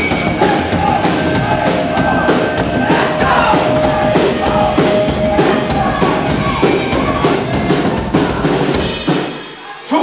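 Punk rock band playing live: electric guitars, bass and drum kit with a steady beat. The music drops away about nine seconds in.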